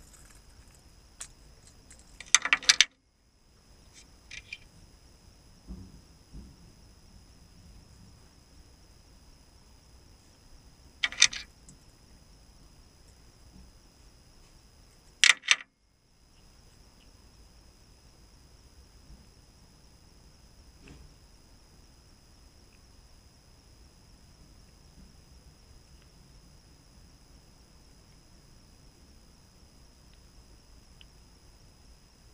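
Small parts of a tractor's old, defective brake-light switch clicking and rattling as they are taken apart by hand. There are quiet fiddling noises throughout and three short sharp clicks: a cluster a couple of seconds in, one around eleven seconds and one around fifteen seconds.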